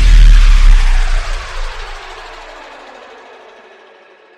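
The closing hit of an electronic intro music sting: a deep boom with a noisy, reverberant tail that fades out steadily over about four seconds.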